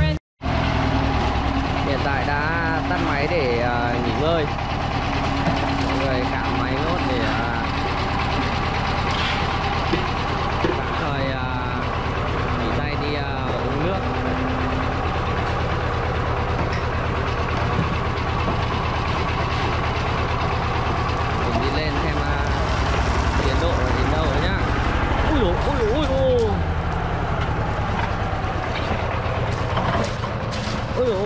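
Concrete mixer's engine running steadily, with people talking and calling over it.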